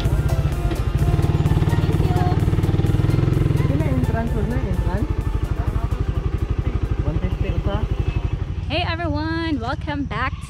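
Motorcycle engine running as the bike rides off, with a fast, even pulse that is loudest for the first few seconds. A voice comes in over it briefly near the middle and again near the end.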